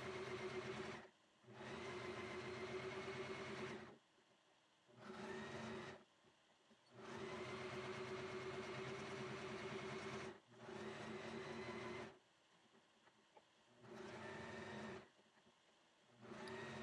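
Electric sewing machine running faintly in six separate spurts, zigzag-stitching along the edge of a layered fleece-and-flannel hammock. Each run lasts from about one to three seconds and stops abruptly into silence.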